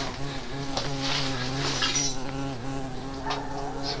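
A steady low buzz that holds one pitch, dipping briefly a little past halfway.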